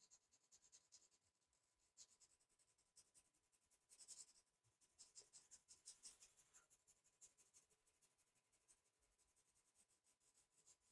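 Faint scratching of a pastel pencil stroking across textured pastel paper in quick, short, repeated strokes, a little louder about four and six seconds in.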